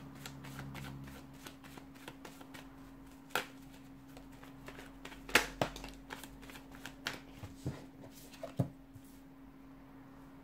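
A tarot deck being shuffled by hand: a run of soft quick card clicks broken by a few sharper snaps, the loudest about halfway, stopping about a second before the end.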